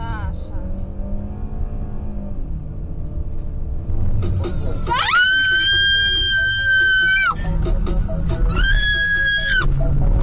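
A person screaming inside a car with engine and road noise underneath. There are two long, high-pitched screams: the first starts about five seconds in and lasts about two seconds, and the second is shorter and wavering near the end.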